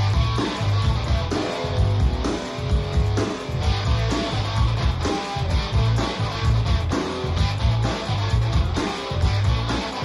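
Band music: electric guitar over a repeating bass line and drums keeping a steady beat.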